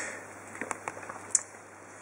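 A few faint, sharp clicks of the Nokia 1100's rubber keypad being pressed, the clearest about a second and a half in, after a soft breathy hiss fades out at the start.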